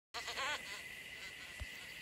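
A short run of quick rising-and-falling animal calls in the first half second, then a faint steady high-pitched hiss with a soft low bump about one and a half seconds in.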